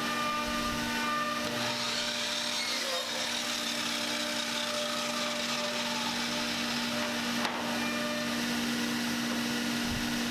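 A workshop machine running with a steady hum, with a single sharp click about seven and a half seconds in.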